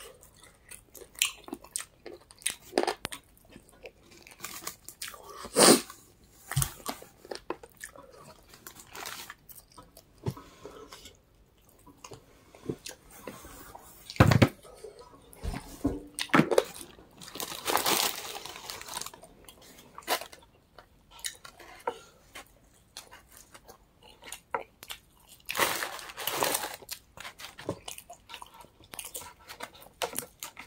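Close-up chewing and biting of fried chicken wings: irregular crunches, wet smacks and crackles as the meat is bitten and pulled off the bone, with a couple of longer noisy stretches midway and near the end.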